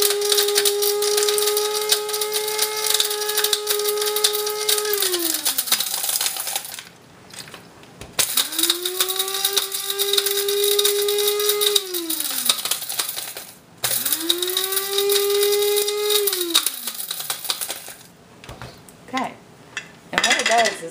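Small electric blade coffee grinder grinding crisp dehydrated sweet potato sheets into powder, the dry pieces rattling against the blade. It runs in three pulses of a few seconds each, the motor's hum falling in pitch as it winds down after each one.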